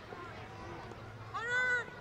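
A single drawn-out, high-pitched shout from a young voice on the field, about half a second long and a little past the middle, its pitch rising and then falling. Faint field chatter lies beneath it.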